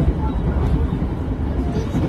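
Steady low rumble of a passenger train carriage from inside, with faint voices over it.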